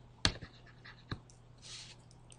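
Pen stylus tapping and rubbing on a tablet while erasing handwritten ink: a sharp tap about a quarter second in, two fainter taps, and a short scratchy rub near the end.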